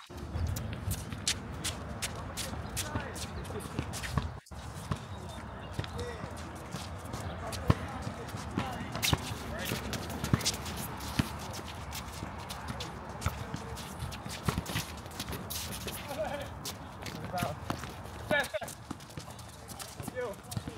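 Outdoor pickup basketball game: a basketball bouncing and dribbled on the asphalt court and players' feet running, as scattered knocks, with voices of players calling out now and then.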